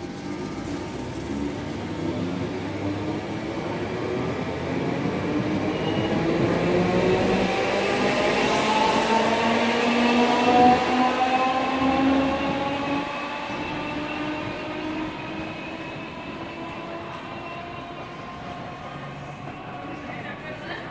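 A Class 315 electric multiple unit pulling away and accelerating. Its thyristor-controlled traction motors give several stacked whines that climb steadily in pitch. The sound grows louder to a peak about halfway through, then fades as the train draws off.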